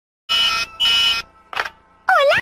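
Two harsh electronic buzzes, each about half a second, one right after the other, starting a quarter second in, followed by a faint short sound.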